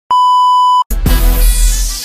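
A television test-pattern tone: one steady high beep lasting under a second, cut off abruptly. Music then starts with a deep bass hit and a falling whoosh.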